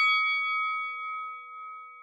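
A bell-like chime ringing out after a few quick strikes, one steady ringing tone slowly fading away.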